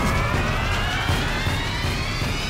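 Dramatic background score: a sustained tone slowly rising in pitch over a low, steady pulsing beat, building tension.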